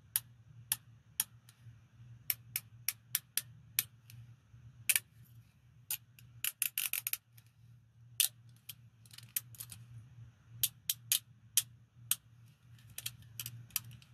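Steel handcuffs worked in gloved hands: irregular sharp metallic clicks and clinks, with a quick run of clicks about halfway through. A faint steady low hum sits underneath.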